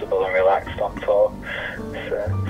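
A man speaking over a telephone line, his voice thin and cut off above the upper mids, trailing off about halfway through, with quiet background music underneath.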